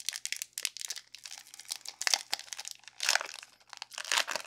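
Foil trading-card booster pack wrapper crinkling and crackling in the hands as it is pulled open, with a louder, longer rip about three seconds in as the wrapper tears.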